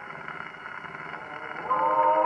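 A 78 rpm shellac record playing on an acoustic gramophone during a brief lull in the music: surface hiss and crackle under faint fading notes. Sustained band notes come back in near the end.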